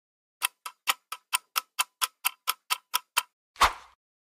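A clock-ticking countdown sound effect: about a dozen sharp ticks, roughly four a second, alternating louder and softer tick-tock. It ends with a short whoosh of noise near the end.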